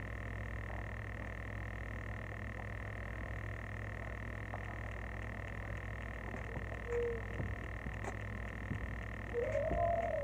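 Steady background noise: a low rumble with a constant high-pitched tone, which is put down to the wind outside. A short wavering hum comes near the end.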